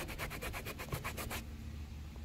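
Microfiber towel scrubbing a wet, cleaner-sprayed car door panel in quick, even back-and-forth strokes, about eight a second, stopping after about a second and a half.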